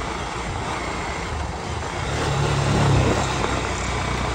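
Motorcycle engine running as the bike rides along at low speed, under a steady rush of wind and road noise on the microphone; the engine note swells a little two to three seconds in.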